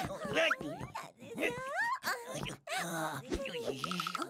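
A cartoon character's wordless vocal sounds: short phrases of put-on babbling and whining that slide up and down in pitch.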